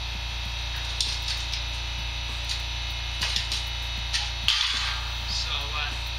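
Steady low electrical hum, with scattered light clicks and taps of hands working on the rusty sheet-metal quarter panel and a short scraping rattle about four and a half seconds in.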